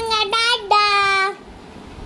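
A child's high-pitched voice singing long, held notes. It stops about two-thirds of the way through.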